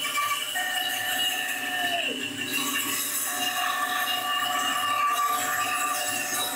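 Bandsaw running and cutting through a cherry burl blank as it is turned on a circle-cutting jig, its blade dulled after weeks of use. A steady whine dips in pitch about two seconds in and comes back about a second later.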